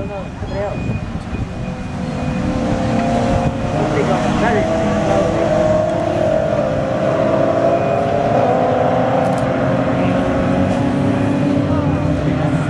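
A pack of BMW 3 Series race cars running at racing speed. Their many engine notes grow louder over the first few seconds as the field comes closer, then hold as a steady, loud mass of overlapping engines.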